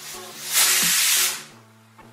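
Pressure cooker whistle: a burst of hissing steam from the weighted valve on the lid, about a second long, starting about half a second in. It is the single whistle that signals the cooker has come up to pressure and the greens are boiled.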